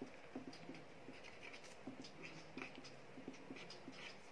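Felt-tip marker writing on paper: faint, short scratching strokes as a line of maths is written out.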